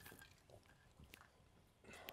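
Near silence, with a few faint small sips and swallows of a man drinking from a cup.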